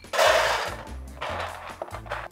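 Hazelnuts poured from a glass bowl into a metal baking pan, a loud rattling clatter. About a second later comes a softer rattle as the nuts are pushed around the pan by hand to spread them out. Background music plays underneath.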